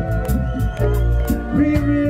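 Live reggae band playing, with a steady bass line under regular drum hits, and a man's voice singing held notes over the band.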